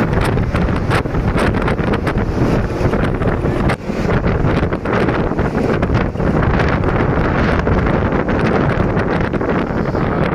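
Wind buffeting a microphone held out of the window of a moving bus, a loud, steady rush with rapid gusty flutter, over the low rumble of the bus and its tyres on the road.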